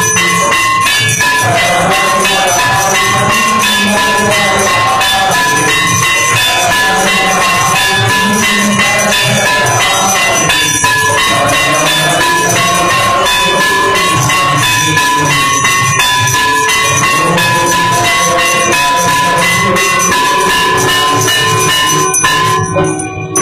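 Temple aarti bells ringing over and over, with drums and cymbals beating a steady, dense rhythm.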